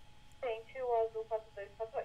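Speech only: a brief transmission from a recorded air traffic control radio, a thin, narrow-band voice that starts about half a second in and is hard to make out.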